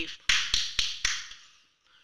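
A quick run of sharp hand claps, about four a second, that stops about a second and a half in.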